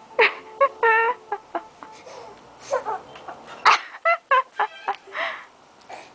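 A toddler's excited voice: a quick string of short, high-pitched squeals and cries, about a dozen in all.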